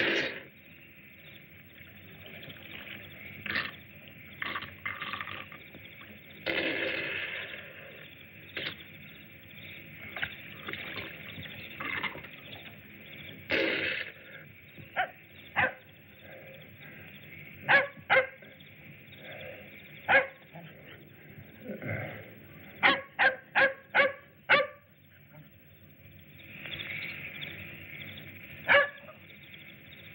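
A dog barking in short, separate barks, with a quick run of five barks about three-quarters of the way through, over the steady hiss of an old film soundtrack.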